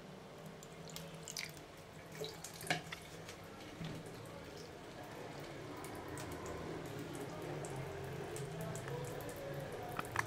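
Thin stream from a bathroom tap running into a sink, splashing on a wet cat's fur and the basin, with scattered drips and small splashes. The running water grows gradually louder over the second half.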